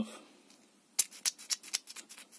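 An MG Rover K-series hydraulic valve lifter, wrapped in a rag with a screwdriver pressed on its ball valve, squeezed over and over to force thick old oil out. From about halfway through it gives a run of sharp clicks, several a second, the first the loudest.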